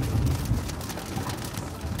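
Light raindrops pattering irregularly on the car's windshield and roof, heard inside the cabin over the low rumble of the car on the move.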